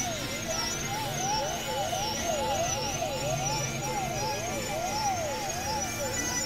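Experimental electronic music: a warbling synthesized tone sweeps up and down in pitch, about two sweeps a second, like a siren. It sits over a dense layered bed of steady drones and noise.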